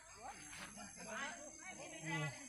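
Faint, indistinct speech, too quiet to make out words.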